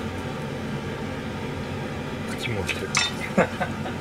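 Kitchen utensils and dishes clinking: a few short, light knocks of metal and crockery starting a little past halfway through, over a steady background hum.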